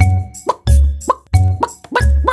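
Instrumental backing of an upbeat children's song: heavy bass notes and drum hits, with short rising blips about every half second.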